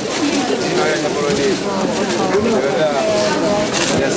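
Several people talking at once, their voices overlapping into unintelligible chatter.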